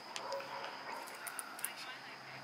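Faint background of distant voices with a dog barking faintly, and a few light clicks about midway.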